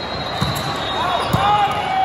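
A volleyball being hit twice, about half a second and a second and a half in, with short sneaker squeaks on the court, over the steady chatter and din of a large hall full of players and spectators.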